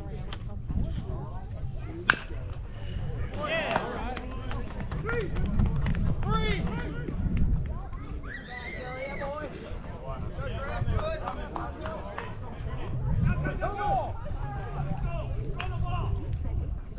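A single sharp crack of a baseball bat hitting the ball, about two seconds in, followed by players and spectators shouting and calling out across the field.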